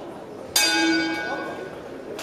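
Boxing ring bell struck once, a single bright ring that fades over about a second and a half, signalling the start of a round.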